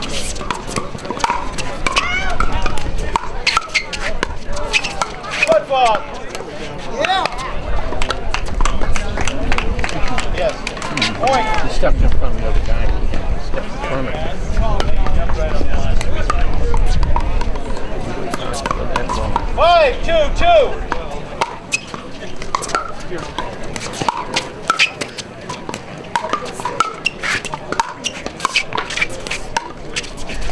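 Pickleball paddles striking a hollow plastic ball in a rally: a run of sharp, irregular pops over voices and crowd chatter. A low rumble runs from about twelve to twenty-one seconds in.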